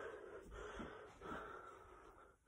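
Faint breathing close to a phone's microphone: soft noisy breaths in and out, several in quick succession.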